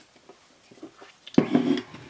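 A woman's short, sudden vocal sound about one and a half seconds in, after a near-quiet stretch of small faint noises.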